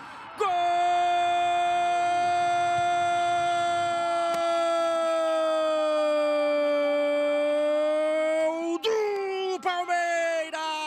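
A TV football commentator's long, held goal cry: one sustained shouted note of about eight seconds, sagging slightly in pitch. Near the end it breaks into shorter shouted words.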